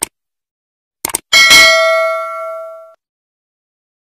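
Subscribe-button animation sound effects: a short click, then a quick double mouse click about a second in, followed by a notification bell ding that rings out and fades over about a second and a half.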